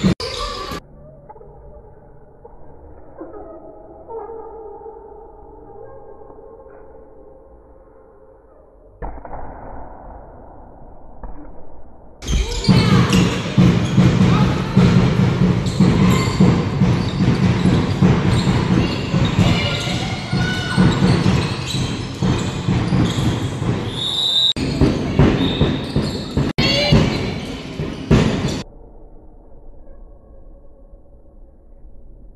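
Handball game sounds: the ball bouncing and women players calling out, echoing around a large sports hall. The sound is muffled and faint for the first ten seconds or so, then loud and full from about twelve seconds in until shortly before the end.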